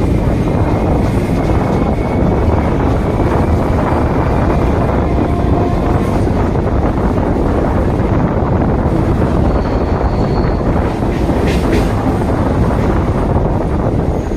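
Suburban electric local train (EMU) running along the line, heard from its open doorway: a steady, loud rumble of wheels on the track.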